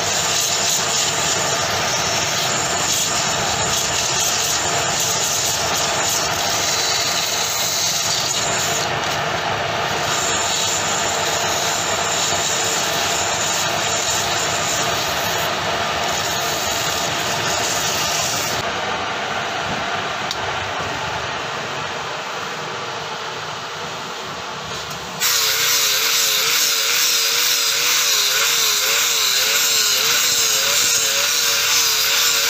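A wood lathe spinning a palm-wood goblet while sandpaper is held against it: a steady rushing sanding hiss over the lathe's motor. About 25 seconds in it cuts to a louder angle grinder with a sanding disc running, its pitch wavering as it sands wood.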